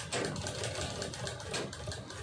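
Black Sandeep sewing machine running at speed, stitching through plastic rice-sack material, with a rapid, even mechanical clatter.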